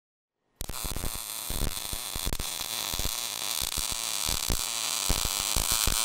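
MIG welding arc crackling, a steady dense buzz with many irregular sharp pops, starting abruptly about half a second in.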